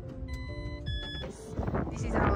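Background music with steady low notes, and two short high electronic beeps in the first second, the second pitched higher than the first. Noisier sound swells up near the end.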